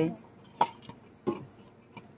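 A few sharp metallic clicks from the telescopic handles of garden loppers being twisted and adjusted by hand. There are two distinct clicks about two-thirds of a second apart, with a fainter tick between them.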